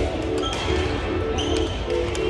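Background music with a short repeating figure of notes about twice a second over a steady bass, with a few sharp taps mixed in.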